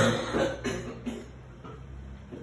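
A man's short laugh at the start, a few breathy pulses dying away within about a second, then quiet room tone.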